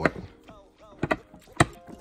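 Plastic disc golf discs knocking against each other as a stack is handled, with two sharp clacks about a second in and half a second later.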